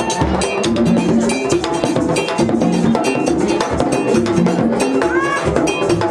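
Vodou ceremonial drumming: hand drums with a metal bell struck in a steady, evenly repeating beat.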